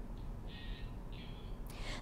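A quiet pause between spoken news items: a faint low studio hum, two short soft hissy sounds in the middle, and a woman's breath intake near the end, just before she speaks again.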